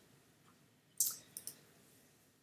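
Three short, faint clicks about a second in, from the computer being worked at the desk, with a quiet room around them.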